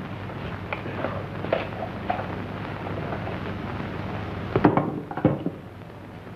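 Steady hiss and crackle of an early-1930s optical film soundtrack, with a few sharp clicks about four and a half to five seconds in.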